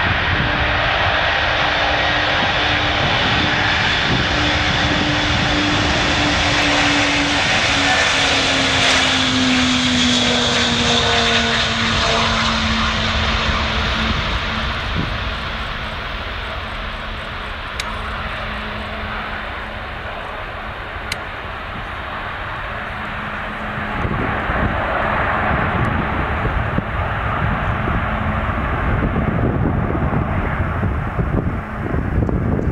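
Antonov An-225 Mriya's six turbofan engines at take-off power as the aircraft runs down the runway and climbs away. A loud jet roar, with an engine tone that falls in pitch about ten seconds in as the aircraft goes past; the roar eases for a while, then grows louder again from about two-thirds of the way through.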